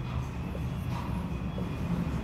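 Marker pen writing on a board, faint short strokes over a steady low background rumble.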